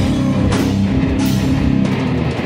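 Heavy metal band playing live: electric guitars and bass on a low riff under loud drums, with several cymbal crashes in quick succession.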